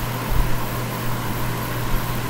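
Steady low hum with an even hiss, unchanging throughout: room background noise.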